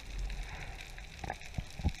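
Faint underwater ambience picked up through a camera housing: a steady crackling hiss, with a few soft low knocks in the second half.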